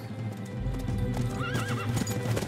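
Horse hooves clattering over a low rumble, with a horse whinnying about a second and a half in, under music.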